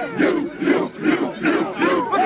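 A football team huddled together shouting in unison: a rhythmic chant of short, loud group shouts, about three a second.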